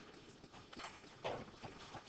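A few faint, irregular taps and knocks, like handling noise at a desk.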